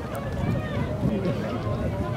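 Outdoor crowd chatter: many adults' and children's voices talking over one another at a steady level, with no single voice standing out.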